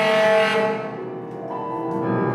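Free-improvised tenor saxophone and grand piano duet. A loud held saxophone note fades out after about half a second, leaving quieter piano playing, and a new note enters near the end.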